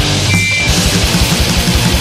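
Fast hardcore punk: distorted electric guitars, bass and rapid drumming. About half a second in, the low end drops out briefly under a short high-pitched tone, then the drums come back in at a fast, driving pace.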